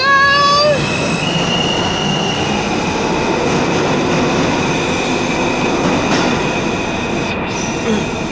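Subway train running at the platform: a steady rumble of wheels on track, with a steady high whine that starts about a second in.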